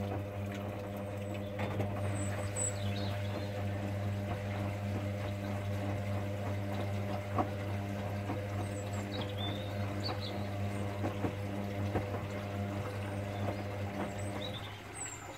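Hoover Dynamic Next front-loading washing machine tumbling a load in its main wash: the drum motor gives a steady hum while water sloshes and the laundry knocks softly as it turns.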